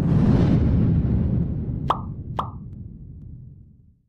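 Animated subscribe end-card sound effect: a loud rumbling whoosh that swells and slowly fades away, with two quick pops about half a second apart in the middle.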